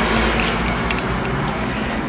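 Steady background noise: a low hum under an even hiss, with a couple of faint clicks about a second in.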